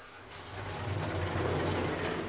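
A KONE Monospace traction elevator travelling with its car in motion, heard from inside the car: a low hum with ride noise over it that swells up about half a second in and begins to ease off near the end as the car slows.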